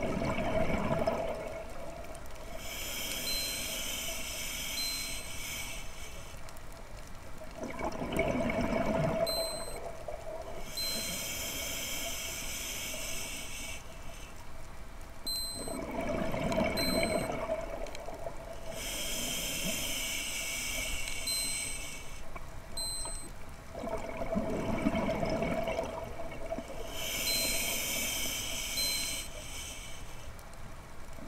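Scuba diver breathing through a regulator underwater: a hissing inhale of about three seconds alternates with a bubbling, gurgling exhale, about one breath every eight seconds, four breaths in all.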